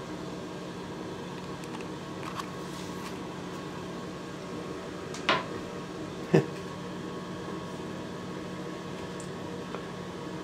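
Steady mechanical hum, like a fan or appliance motor, with two brief sharp sounds about five and six seconds in.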